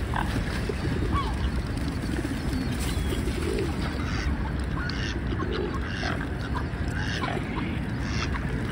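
Mallard ducks and other waterbirds calling in scattered short calls, over a steady low rumble.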